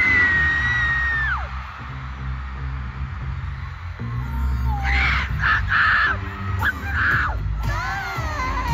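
Live K-pop dance track played loud through an arena sound system, with a heavy bass beat. Over it, crowd screams: one long high scream at the start that slides down, and several short shrieks about five to seven seconds in.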